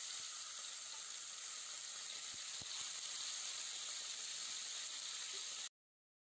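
Rump steak sizzling in hot olive oil in a stainless steel pan: a steady hiss with a few faint crackles, cutting off abruptly near the end.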